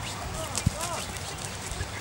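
Sheep milling in a small pen, their hooves stepping and shuffling on dirt, with one sharp knock about two-thirds of a second in and a few short high calls.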